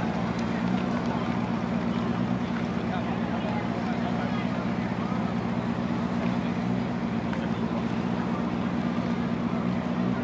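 A steady low machinery hum from the moored warship, with a crowd chattering over it.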